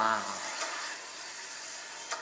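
A steady hissing noise from the trailer soundtrack, with a voice trailing off right at the start.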